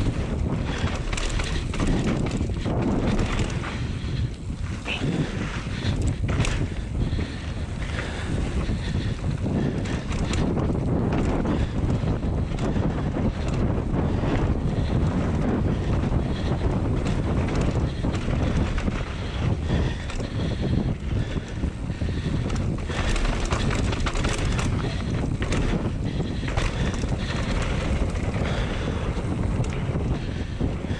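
Wind buffeting the microphone of a camera on a mountain bike descending fast, over the rumble of knobby tyres on a dry dirt trail, with frequent sharp knocks and rattles as the bike goes over bumps.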